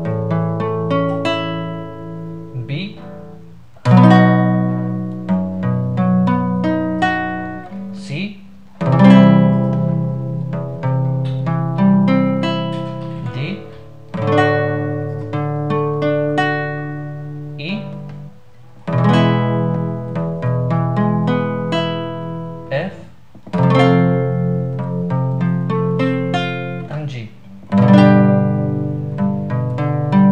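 Nylon-string classical guitar playing a series of major chords, among them A, D and G. A new chord comes in about every four to five seconds: each is struck loudly, its strings are sounded again several times, and it fades. Short string squeaks come between chords as the fretting hand shifts.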